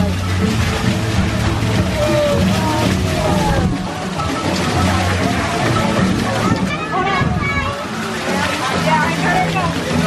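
An interactive fountain's water jet shooting up and splashing back onto rocks and into a pool, heard under music and the chatter of people around.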